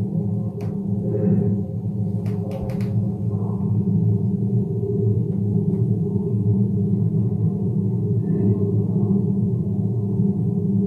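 A low, steady drone, music-like, running unchanged, with a few faint clicks in the first three seconds.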